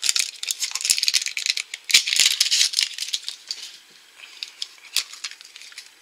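A small plastic toy capsule being handled and opened by hand: dense crackling plastic rattles for about three seconds, then quieter scattered clicks and a sharp click near the end.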